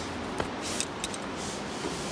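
Climbing rope rubbing and sliding through an ATC belay device and autoblock friction hitch as a rappel gets going, the rope still running with a bit of friction. A few light clicks come in the first second.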